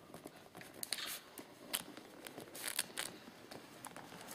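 Faint scratching of a pen writing on paper, in several short strokes.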